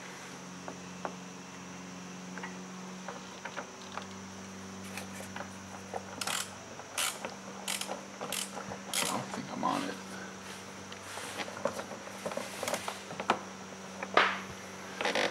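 Ratchet wrench on a long extension and universal joint, clicking and clinking irregularly against metal from about five seconds in, as the throttle actuator bolts are worked. A faint steady hum lies underneath.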